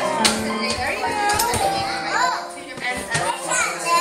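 Music playing while young girls chatter and call out over it in high voices.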